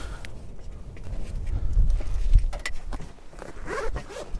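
Footsteps and scattered knocks of someone climbing onto the roof of a Land Rover Defender, with shoes and hands on the aluminium body and the metal roof rack, over a steady low rumble.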